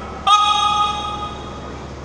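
A horn sounding: a sudden steady, bright blast starting about a quarter-second in, loudest for about half a second, then fading out over the next second.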